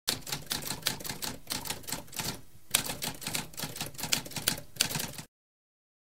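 Typewriter keys struck in a rapid clattering run, several strikes a second, with a short pause about halfway, stopping abruptly a little after five seconds in.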